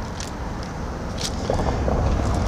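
A car, an Infiniti Q50 sedan, approaching along the street: its engine and tyre noise is a low rumble that grows steadily louder as it nears.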